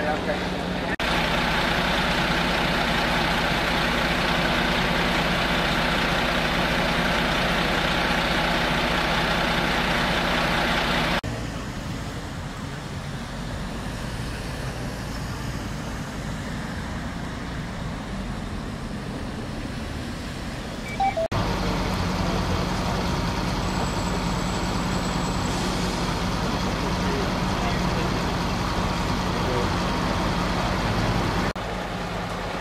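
Truck engine idling steadily, a low even drone, with faint voices. The sound changes abruptly three times: about a second in, around eleven seconds in, where it drops to a quieter stretch, and around twenty-one seconds in, where the drone comes back.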